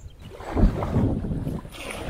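Wind rumbling on a sports camera's microphone over the sound of river water around an inflatable raft being paddled, swelling about half a second in.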